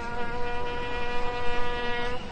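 A brass instrument holding one long, steady note.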